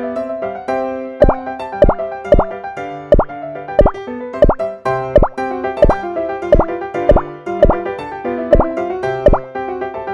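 Light piano background music with a short cartoon 'plop' sound effect repeated about thirteen times, roughly every two-thirds of a second, as jelly candies are set down one by one.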